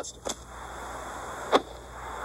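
Film soundtrack played from a screen: a steady hiss that builds up after the dialogue ends, with one short sharp sound about one and a half seconds in.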